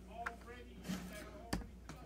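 A few light, separate knocks and clicks from a 3D-printed plastic turntable being handled on a table as its top plate is turned by hand; the sharpest knock comes about halfway through.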